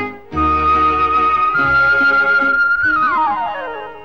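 Instrumental interlude of a 1970s Malayalam film song: a flute holds a long high note, steps up a little, then slides steeply down near the end, over low bass notes and accompaniment.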